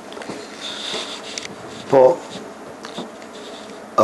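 A man's voice in a small room: a pause in his speech with one short spoken syllable about two seconds in, over low room noise.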